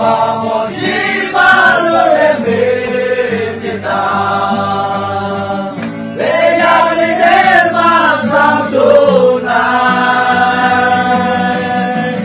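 A group of male voices singing a slow song together, holding long notes over a steady low drone.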